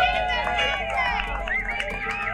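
A group of people cheering and shouting together, several voices rising and gliding over one another.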